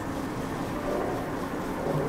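Steady, low background room noise with no distinct events.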